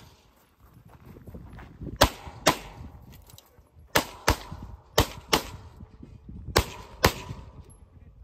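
Pistol fired in a competition stage: eight loud shots in four quick pairs, each pair about half a second apart, with about a second between pairs, the double taps of IDPA engaging each target twice.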